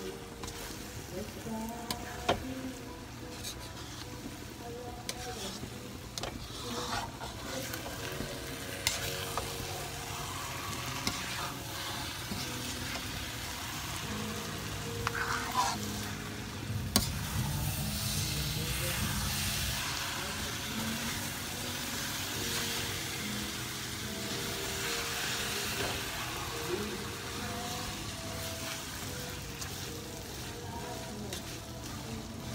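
A metal spoon stirring and scraping thick, sticky glutinous rice around a metal pan while the biko mixture of rice, coconut milk and sugar sizzles as it cooks down. A few sharp clinks of the spoon against the pan stand out.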